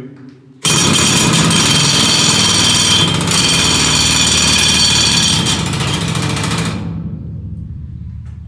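Pneumatic rock drill on a column mount hammering at full speed in a mine tunnel: it starts suddenly just after the count, runs as a loud, rapid, steady clatter for about six seconds, then stops, its sound dying away in the tunnel's echo.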